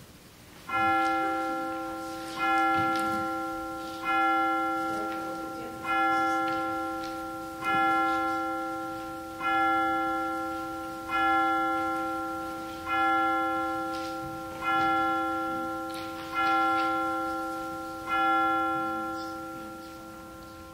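A single bell tolled eleven times at the same pitch, one strike about every second and three quarters, each stroke ringing on and fading until the next.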